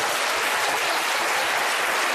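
Studio audience applauding: a steady, even clapping from a large crowd.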